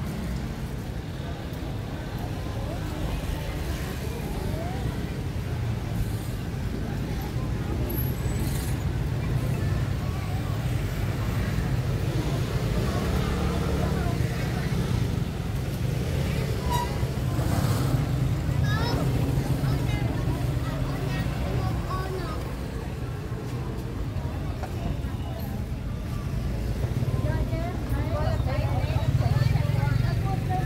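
Busy street-market ambience: a steady low rumble of motorbike traffic, with people talking.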